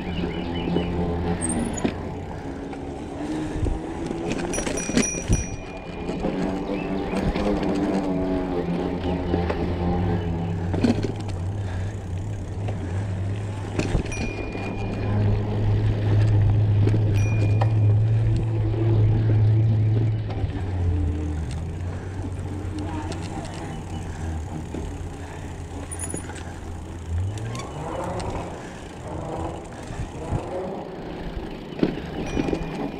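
Mountain bike riding over a dirt trail: tyre and frame rattle with a low wind rumble on the handlebar camera's microphone. A few short, high brake squeals come in now and then, from brakes the rider says are giving him trouble.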